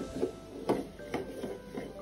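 A few light knocks of a small plastic toy against wooden floorboards, over faint background music.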